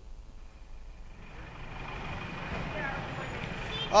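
Faint road traffic noise that grows slowly louder, with a faint steady high tone through it.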